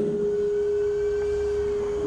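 A single steady, pure tone held at one pitch, with no speech over it.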